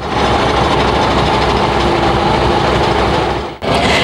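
Truck-mounted drilling rig running, its spiral auger boring a borehole into the soil: a loud, steady mechanical noise that cuts off suddenly about three and a half seconds in.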